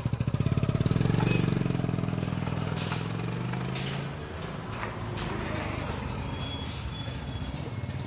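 Motorcycle engine running with a rapid low throb, rising in pitch and loudness about a second in, then fading away over the next few seconds.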